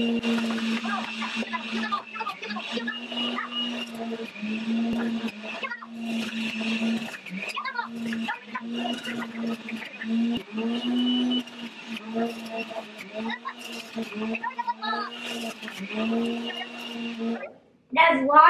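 Breville Juice Fountain Duo centrifugal juicer running with a steady motor hum that briefly dips and recovers as produce is pushed down the feed chute, then switches off shortly before the end.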